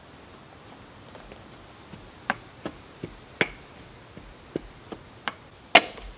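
Shovel blade and steel bar striking dirt and stone while digging in a rock to bed it as a step: about eight sharp, irregular knocks and scrapes in the second half, the loudest just before the end.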